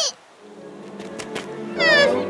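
Quiet background music, then near the end a short, high cry that falls in pitch.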